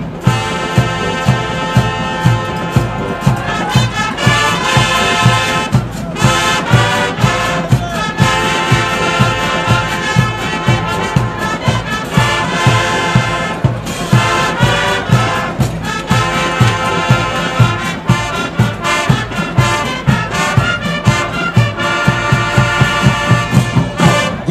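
A high school marching band playing full out, with brass carrying the tune over a steady drum beat. The music breaks off briefly about six seconds in and again near fourteen seconds.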